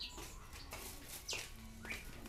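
Faint bird chirps: a few short, high calls scattered over the two seconds.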